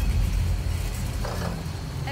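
Boat motor running steadily as the boat moves across open water, a loud low rumble with water rushing past the hull.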